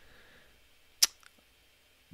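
A single short, sharp click about a second in, amid a quiet room.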